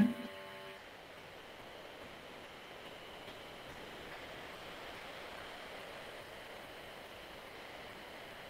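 Faint, steady hiss of background noise over an open video-call microphone, with no distinct events.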